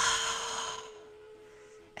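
A woman's long sigh: a breathy exhale that starts sharply and fades away over about a second. A single steady tone holds underneath.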